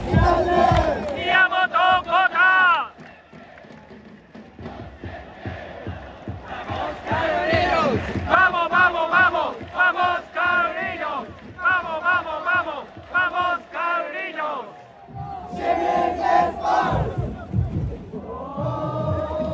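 Football supporters in a stadium chanting in unison, many voices shouting a rhythmic chant in short, evenly repeated bursts. The chant eases off for a few seconds early on, then comes back loud and keeps the same beat.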